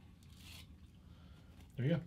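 A faint, short rustle of stacked potato chips being handled, about half a second in. Near the end a man's voice cuts in.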